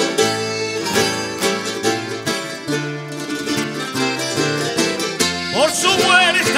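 Instrumental passage of a folk string band: guitars and other plucked string instruments strumming a dance tune over moving bass notes. A singer's voice comes back in with a rising glide near the end.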